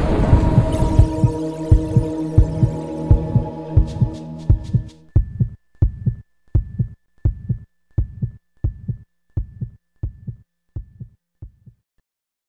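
Intro sound effect of deep, regular heartbeat-like thumps, about one and a half a second, fading out near the end. Under the first few seconds a rumble with a steady hum dies away by about five seconds in.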